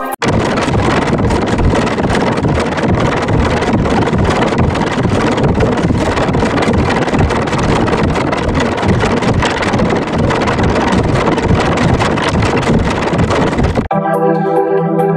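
A loud, harsh noise from a heavily distorted audio effect, with no tune or voice left in it. It cuts in suddenly just after the start and stops suddenly near the end.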